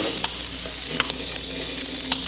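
Crackling surface noise of an old radio transcription recording, with a faint low hum and a couple of clicks.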